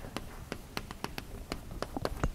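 Chalk tapping on a blackboard while writing: a quick, irregular series of sharp clicks.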